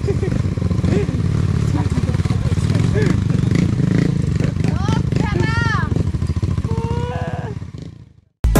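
Motorcycle engine idling steadily with a fast, even low pulse, while voices call out over it; the sound fades out near the end.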